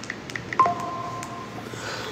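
Smartphone sounds: a few short tap blips in quick succession, then a steady two-note electronic tone held for about a second, like a phone keypad or dialing tone.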